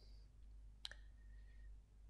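Near silence with a single faint click a little under a second in, followed by a faint thin tone.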